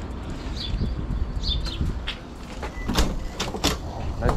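Birds chirping, then a quick run of sharp clicks and knocks about three seconds in as an aluminium-framed glass entry door is unlatched and pulled open.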